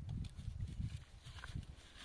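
Earth being sifted in a round wooden-framed sieve: the frame knocks and scuffs against the soil pile, with a grainy rustle of soil. The irregular low knocks fall in the first second and ease off after.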